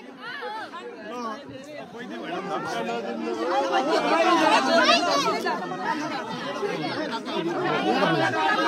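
A crowd of many people talking and calling out at once, voices overlapping into chatter that grows louder a few seconds in.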